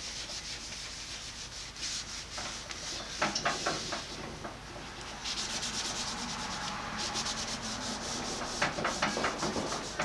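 Cloth rag rubbing across a cast iron bandsaw table in repeated back-and-forth strokes, wiping off sprayed-on rust remover and the rust it has loosened.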